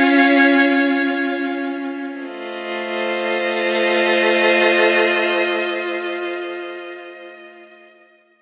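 Sampled solo violin (8Dio Studio Solo Violin) playing single-bow-stroke arcs with rich molto vibrato. A note swells and dies away, then a lower note swells in about two seconds in and fades out near the end.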